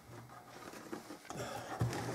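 Quiet handling of an old wooden-and-metal plate box camera: a few faint clicks and light knocks as fingers work at its open plate compartment, with a soft knock near the end.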